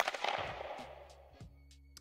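An edited-in transition sound effect: one sharp bang, its noisy tail dying away over about a second and a half.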